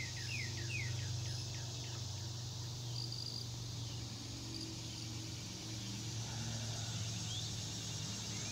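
Outdoor ambience: a bird sings a quick run of downward-sliding whistled notes, about three a second, over the first second and a half, and gives one rising note near the end. A steady high hiss of insects and a steady low hum run underneath.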